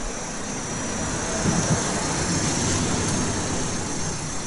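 Steady outdoor background noise: an even hiss with a low rumble underneath, with no clear event standing out.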